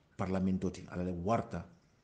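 A man speaking in a lecture, one phrase with short pauses before and after.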